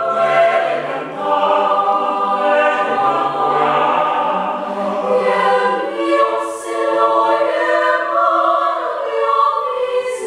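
Mixed choir of young men's and women's voices singing a cappella in parts, with long held chords. The lowest voices drop out about halfway through and come back in near the end.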